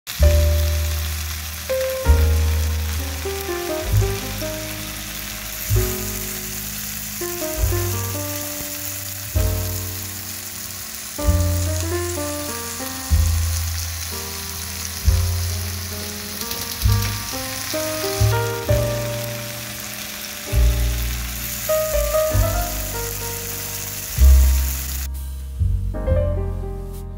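Background music with a melody and low bass notes about every two seconds, over beef steak sizzling in an oiled frying pan as a steady high hiss. The sizzle stops about a second before the end, leaving the music.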